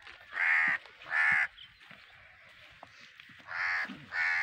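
Three harsh bird calls: two close together in the first second and a half, and one more near the end.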